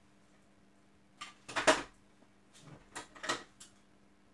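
Hand snips cutting through a network cable's wires: a few short, sharp crunching clicks starting about a second in, the loudest near the middle.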